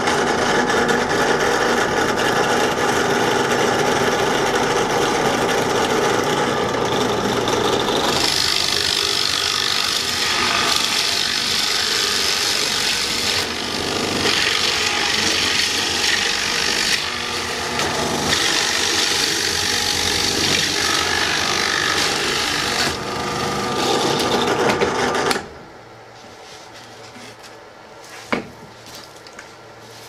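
Benchtop drill press running a 1-1/2-inch Forstner bit down through three clamped sheets of 3/8-inch plywood, the motor's run mixed with the scraping of the bit cutting wood. The cutting turns harsher and brighter about eight seconds in. The press shuts off suddenly with about five seconds to go, and a couple of short knocks follow.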